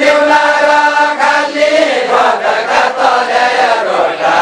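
A group of voices singing a Nepali deuda folk song together in a chant-like melody, drawing out long held notes.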